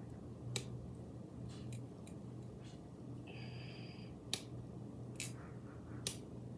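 Faint handling of a halved, unripe avocado: a few sharp clicks and a brief squeak as hands twist and pry at the halves to free the stuck seed, over a low steady room hum.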